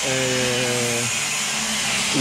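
A man's drawn-out hesitation sound, a flat 'eee' held for about a second, followed by a fainter steady hum, over a steady high hiss.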